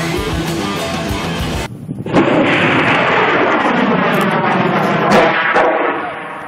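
Rock music with electric guitar, cut off about a second and a half in. Then, from about two seconds in, the loud, steady rushing hiss of a homemade steam-powered rocket's exhaust as it launches.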